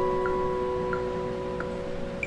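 Steel-string acoustic guitar played fingerstyle, a chord left ringing and slowly fading with no new notes struck, a held pause in the piece before the next phrase.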